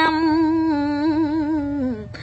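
A woman's unaccompanied voice singing Khmer smot, Buddhist chanted verse, holding one long note with a wavering vibrato that slides down in pitch near the end.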